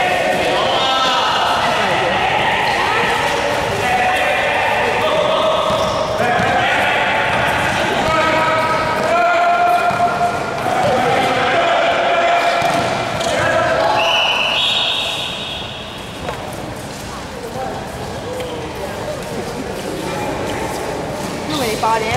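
Basketball game in play: players shouting and calling to each other while a basketball is dribbled on the court. A short steady high tone sounds about two-thirds of the way through.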